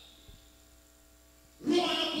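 A pause in amplified speech that leaves a faint steady electrical hum from the sound system. A man's voice starts again through the microphone near the end.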